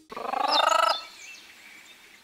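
A short animal call lasting just under a second, rising in quickly and pulsing fast like a rattle, followed by a faint hiss.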